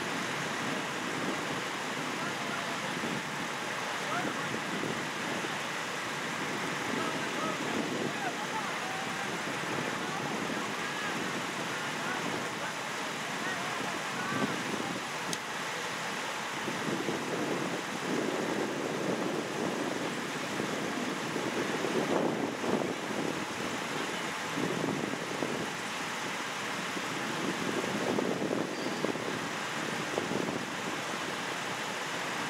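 Outdoor roadside ambience: wind on the microphone and road noise, with an indistinct murmur of people talking. Vehicle noise grows in the second half as a car approaches.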